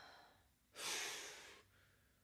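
A person breathes out heavily once, a sigh that starts about three-quarters of a second in and fades out in under a second.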